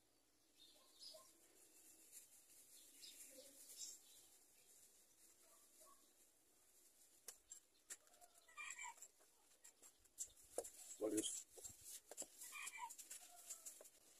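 Near silence: a quiet outdoor background with a few faint distant bird calls and some soft knocks, the loudest of them a bit after the middle.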